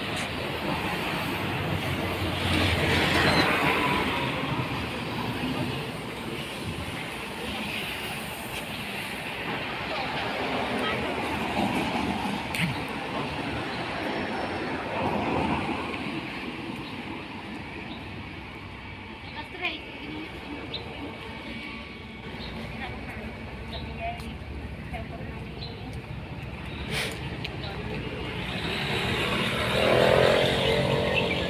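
Street traffic: cars passing on the road, several swelling up and fading away over a steady background noise.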